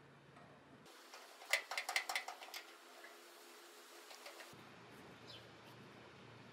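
A brief run of faint metallic clicks and ticks, about one and a half to two and a half seconds in, from a small hand screwdriver driving a screw into a gas grill burner's crossover tube tab, the screw biting into a hole kinked so it would grip.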